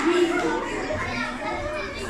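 Children's voices talking in a school hall.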